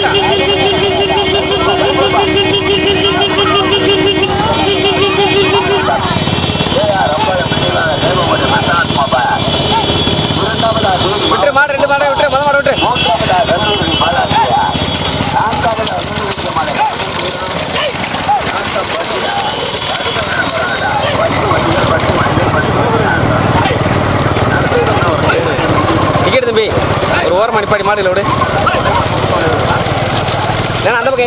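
Men's voices shouting over the running engines of vehicles following a bullock cart race, with a warbling tone through the first six seconds. The engine rumble grows heavier in the second half.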